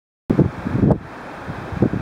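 Wind buffeting the camera microphone in uneven gusts, loudest in the first second.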